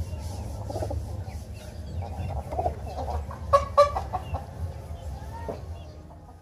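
Domestic chickens clucking, with two sharp, louder squawks about halfway through, over a steady low hum.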